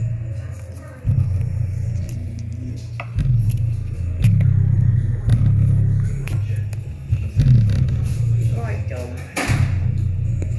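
Bass-heavy music played through a loudspeaker, its woofer producing a strong low bass that comes in blocks a second or two long and stops between them. A voice is heard briefly near the end.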